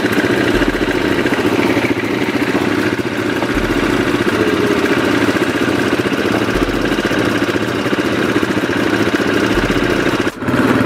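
Several quad bikes' engines idling together, running steadily with no revving.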